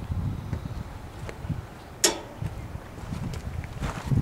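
Wind buffeting the microphone as an uneven low rumble, with one sharp click about halfway through.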